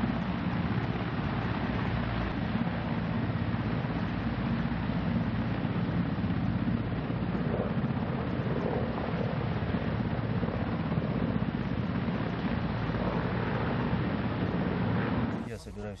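Military transport helicopters running on the ground at close range, turbine engines and main rotors making a steady, heavy noise. It cuts off abruptly near the end.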